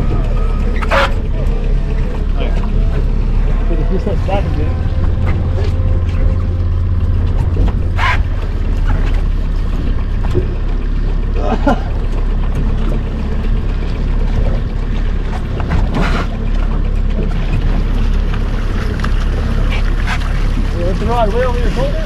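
Boat motor running steadily at low revs, a constant low hum, with a few sharp knocks or clicks on the boat.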